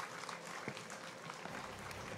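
Audience applauding faintly, with many irregular claps.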